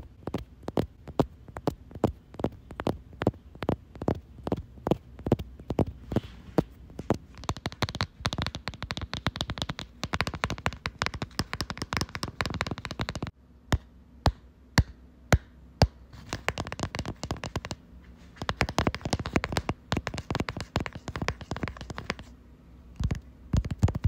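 Fast ASMR tapping and clicking, several taps a second. From about a third of the way in to just past the middle it turns into a denser, scratchy rolling texture, then breaks off suddenly. A few sparse, sharper taps follow, and then the rapid tapping resumes.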